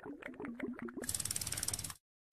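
Sound effects from an animated outro. A short wavering low tone with a few scattered clicks turns, about a second in, into a fast, even run of ratchet-like ticks, roughly fifteen a second, that stops suddenly at the card change.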